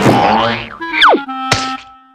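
Cartoon slapstick sound effects over music: a sudden crash at the start, then a quick, steep downward glide about a second in, ending in a sharp thud as a character lands headfirst in snow. A held low note follows.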